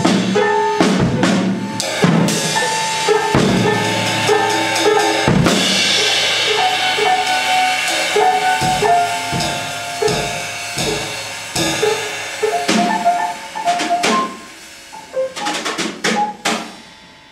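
Drum kit and grand piano played together: dense drum strikes and a cymbal wash over short, repeated piano notes. Near the end the drumming thins out and the level drops, leaving sparser piano.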